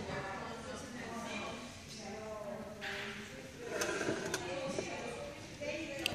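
Indistinct chatter of other people talking in a large hall, with a short rustle about three seconds in and a couple of light clicks a little later.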